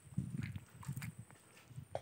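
Wet mud squelching as hands work and grope through a shallow creek bed, in quick irregular squishes that are busiest in the first second and again near the end.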